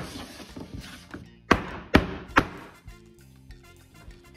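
A metal sheet pan of freshly piped macaron batter banged down on a countertop three times in quick succession, about a second and a half in, to knock air bubbles out of the shells.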